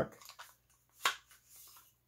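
A few faint handling clicks, then one sharp click about a second in: an AR-15 collapsible stock being worked on its commercial-spec buffer tube, where it locks up snug without rattle.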